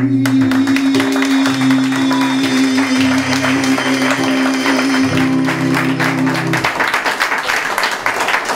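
A man holds a long final sung note over classical guitar at the close of a Neapolitan song, while audience applause breaks out. The note and guitar stop a little over six seconds in, leaving the applause alone.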